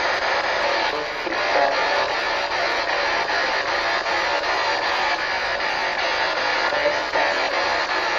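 Handheld spirit box sweeping through radio frequencies: a steady wash of static, chopped into rapid fragments of broadcast that include music.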